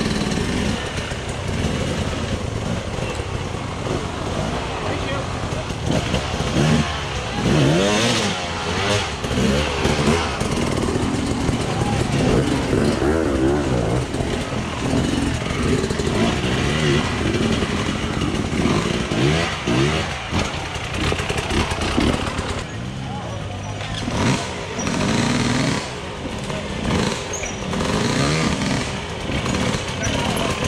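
Enduro dirt bike engines revving up and down repeatedly as riders climb over rocks, mixed with spectators' voices and shouts.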